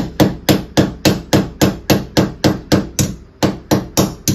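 Wooden-handled hand hammer striking against a wall in a quick, steady series, about four blows a second, fixing a wire hook in place.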